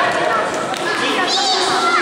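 Many children's voices shouting and calling out over one another in a continuous, loud babble.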